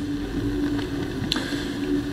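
Steady hum of room background noise with a faint held tone running through it, and a single light click a little past the middle.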